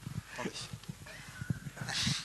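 Microphone handling noise: scattered soft knocks and thumps as a microphone and its cable are fiddled with, then a brief rustle near the end.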